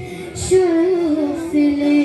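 A boy's voice singing a manqabat, a devotional praise poem, into a microphone, holding long notes that waver and turn in pitch. The voice pauses briefly at the start and comes back in about half a second in with a short hissing consonant.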